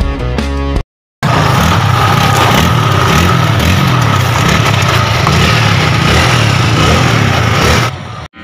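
Rock music for under a second, a brief cut to silence, then motorcycle engines running loud and close for about six seconds, their pitch wavering up and down as the throttle changes.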